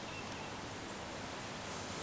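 Steady outdoor background noise, like a light breeze in foliage, with a brief faint bird chirp just after the start.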